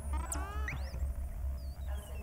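Electronic, synthesizer-like tones gliding in pitch: a few quick rising and falling sweeps in the first second, then a long tone sliding down, over a steady low hum. The sound comes from the robotic-art video's soundtrack played through the hall's speakers.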